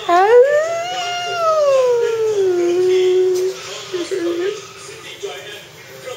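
Pomeranian howling: one long howl that rises, slowly falls and then holds for about three and a half seconds, followed by a short second call about four seconds in.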